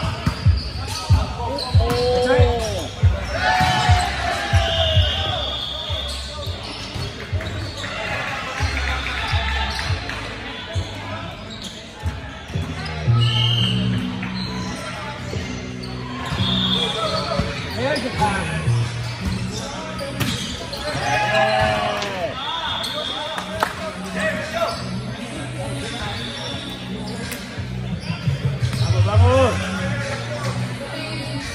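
Volleyball rally: sharp hits of the ball in quick succession, most dense in the first few seconds. Sneakers squeak briefly on the court floor and players call out.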